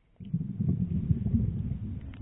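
Low underwater rumble and burble of water and air moving against the camera housing, starting suddenly a moment in, with scattered crackles, and tailing off near the end.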